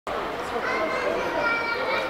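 Many children's voices talking and calling at once, a steady babble of schoolchildren.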